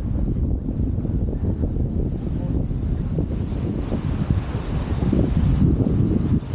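Wind buffeting the microphone: a dense low rumble with no clear pitch, a little louder near the end.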